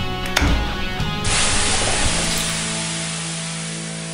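Water thrown onto a hot sauna stove hissing into steam: a sudden hiss about a second in that slowly dies away. Guitar music plays underneath.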